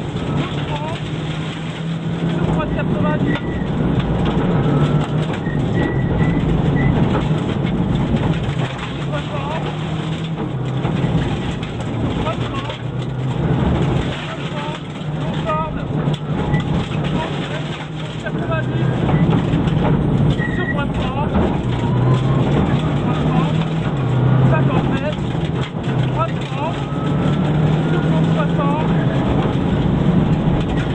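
Subaru Impreza N4 rally car's turbocharged flat-four engine heard from inside the cabin at stage pace, its revs climbing and dropping in steps through gear changes, with several short dips in loudness where the car lifts off.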